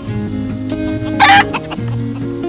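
Acoustic guitar background music, with one short, loud call from a fowl a little past halfway through.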